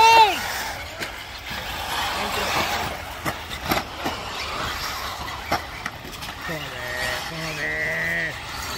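Off-road RC buggies racing on a dirt track, a steady distant running noise with a few sharp knocks around the middle. A voice calls out in a long, drawn-out shout near the end.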